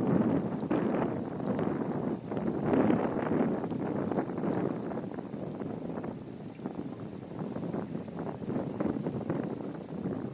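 Wind buffeting the camera's microphone: an uneven rushing noise that swells and eases, strongest in the first few seconds.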